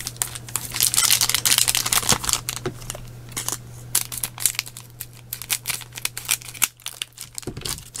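Foil booster-pack wrappers crinkling in the hands and scissors cutting through two stacked packs at once: a dense run of crinkles and sharp clicks, heaviest in the first few seconds, then sparser. A low steady hum runs underneath and stops near the end.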